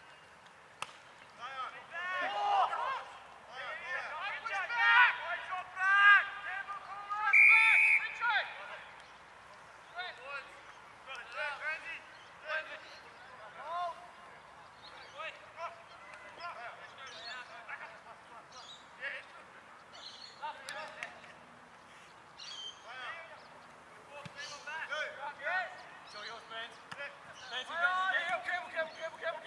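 Players' shouts and calls across the football field, loudest in a cluster of short calls a couple of seconds in, quieter in the middle and picking up again near the end, with a few sharp knocks among them.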